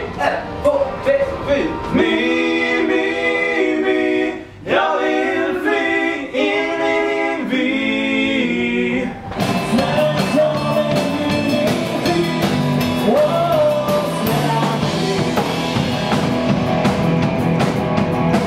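Pop-rock song with singing: for about the first nine seconds it sounds dull, with the treble cut off, then it switches to a full-range live rock band of electric guitar, bass guitar and drums.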